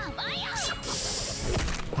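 Anime soundtrack: a character's voice, with a short burst of hissing sound effect about a second in, over background music.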